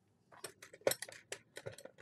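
A quick, irregular run of light clicks and clinks from small hard objects being handled, with one louder click about a second in.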